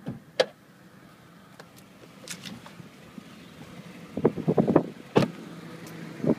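Clicks and knocks of someone climbing out of an idling 2002 Honda CR-V: a sharp click near the start, a cluster of knocks around four seconds in, then a loud sharp knock about five seconds in as the door shuts. The engine idles faintly underneath.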